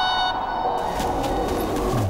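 TV-drama background score: a held sustained note dies away, and about a second in a loud rushing whoosh with a low rumble swells up as a scene-transition sound effect.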